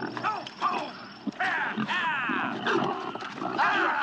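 Several domestic pigs grunting and squealing as they root in a flower bed, with a run of squeals about a second and a half in.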